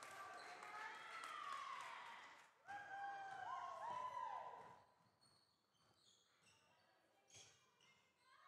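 Faint basketball court sounds in a sports hall: long, gliding squeaky tones through the first half, then near quiet with a light knock near the end.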